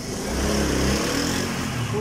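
Motorcycle engine running while being ridden through a mine tunnel, its pitch easing slightly downward, under a steady rushing hiss.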